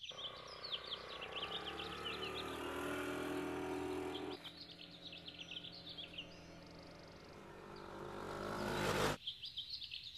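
A motor vehicle engine running along a road for the first four seconds, then a second pass that swells to its loudest near the end and cuts off suddenly. Birds chirp throughout.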